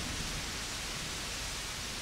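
Heavy rain falling steadily, an even hiss with no distinct drops standing out.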